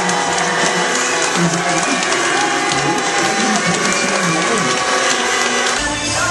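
A large crowd clapping and cheering: dense, steady applause with voices shouting through it.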